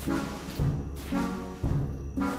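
Dramatic background score music with deep drum hits, like timpani, about once a second.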